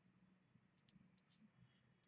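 Near silence: room tone with a few faint, short clicks about a second in.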